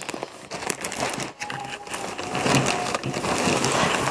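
A large Kappahl shopping bag rustling and crinkling as it is handled and a bulky jacket is pulled out of it, with irregular scrapes and small clicks.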